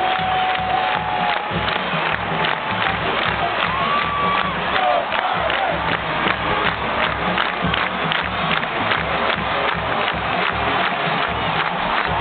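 Large crowd cheering and yelling over loud music, with a steady beat of about two strikes a second.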